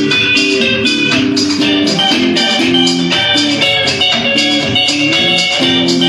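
Live band jam with electric guitars and electric bass playing over a steady rhythmic pulse, with sustained melodic notes above.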